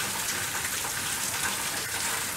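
Steady hissing background noise, like rain or rushing water, with no distinct events.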